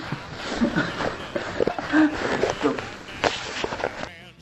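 Indistinct voices and a few short vocal sounds mixed with shuffling, knocks and footsteps as a person walks up to a table.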